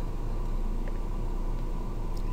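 Steady low hum with faint hiss: the background noise of the recording, with no distinct events.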